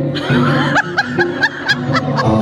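Music playing through the hall's sound system, with a person laughing over it in a run of short 'ha-ha' bursts, about four a second, starting a little before one second in.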